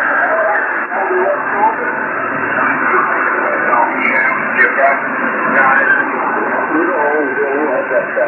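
Radio receiver carrying a weak long-distance station through heavy static: a steady hiss with a faint man's voice partly buried in it, coming through more clearly near the end.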